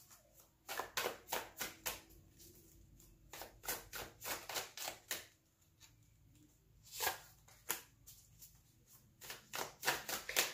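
Tarot cards being shuffled and handled: soft papery clicks and riffles in several short bursts.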